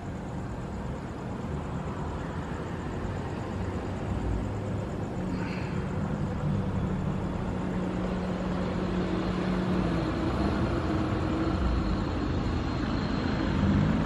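Steady outdoor background rumble and hiss, slowly growing louder, with a low droning hum like a distant vehicle coming in about halfway through.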